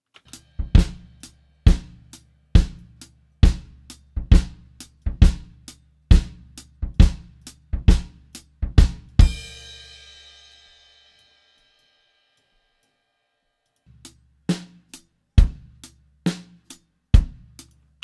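A drum kit playing back a steady beat from a live recording made with only a kick mic and two overheads, with no snare close mic. About nine seconds in, a cymbal crash rings out and the sound stops; a few seconds later the beat starts again.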